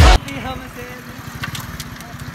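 Motorcycle engine idling with a steady low putter, after background music cuts off abruptly at the start. Two short sharp clicks come through about three-quarters of the way in.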